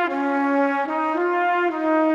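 Background music: a brass melody, trumpet-like, played in long held notes that step to a new pitch several times.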